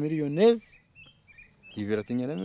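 A man speaking, and in the pause about a second in, a bird gives a few short, faint chirps.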